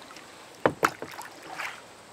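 Two sharp knocks in quick succession, a little over half a second in, from a paddle striking the kayak's hull, followed by a softer knock or swish about a second later.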